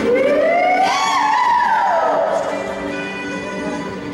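Music with sustained chords, over which a long pitched tone slides upward for about a second and then falls back down.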